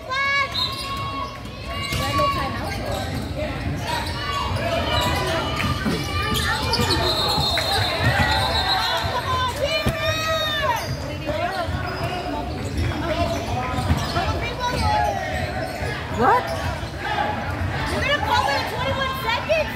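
Sounds of a basketball game in a gym: a basketball bouncing on the hardwood court, with sneaker squeaks and players and spectators calling out throughout.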